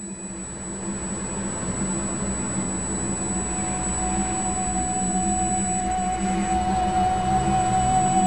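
Ambient drone music: low held tones under a wash of noise that grows steadily louder, with a high sustained tone coming in about halfway through.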